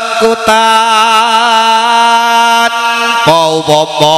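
Sung chant-like melody of a topeng ireng performance: one voice holding a long steady note from about half a second in until nearly three seconds, then moving on with a wavering pitch.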